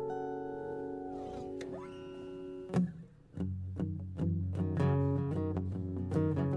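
Live acoustic guitars playing an instrumental passage. Held notes slide and fade, a sharp strike comes a little under three seconds in, and after a short gap steady rhythmic chord strumming starts.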